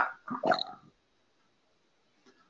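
A short murmured vocal sound or two from a person's voice in the first second, trailing off into silence for the rest.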